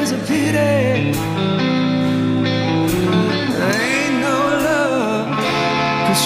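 Rock band playing a slow blues song live: electric guitar over held chords, with wavering, bending melody lines and singing.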